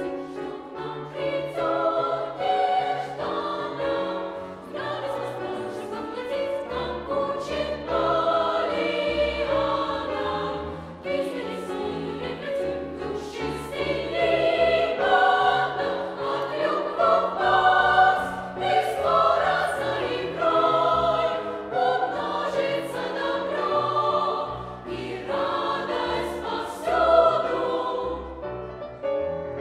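Youth choir singing a classical choral piece in several parts, with piano accompaniment in the bass.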